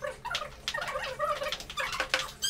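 High-pitched human voices, rapid and choppy, with quick rises and falls in pitch, like excited squealing or giggling.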